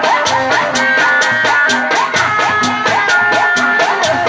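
Loud amplified music from a Sundanese kuda renggong troupe. Drums and a fast, even rattle of percussion, about five strokes a second, play under a high wavering melody line.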